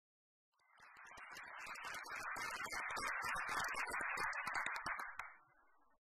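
Audience applauding: the clapping starts about half a second in, swells, and dies away near the end.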